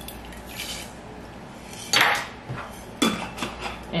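Kitchenware clattering as salt is measured into pickling brine: a measuring spoon, a glass measuring cup and a stainless steel pot clink and knock together, with a loud clatter about two seconds in and a sharper knock about a second later.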